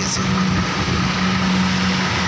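Heavy multi-axle goods truck rolling slowly past close by, its diesel engine running with a steady low hum under load as it climbs a steep grade. Tyre and road noise run beneath it.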